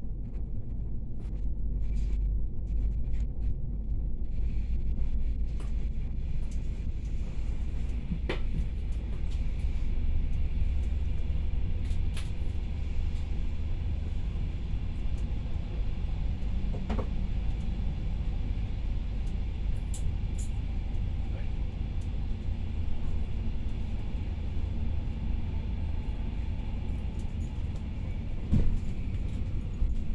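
Pesa SunDeck double-deck passenger coach running on the rails, heard from inside on the lower deck: a steady low rumble with a few sharp clicks and knocks scattered through it, the sharpest a couple of seconds before the end.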